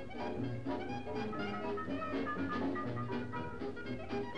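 A dance band playing a lively jazz tune, led by brass.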